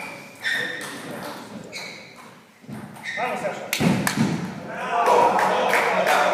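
Table tennis ball clicking against the table and bats in a string of short, sharp knocks as a point gets going, with men's voices talking over it.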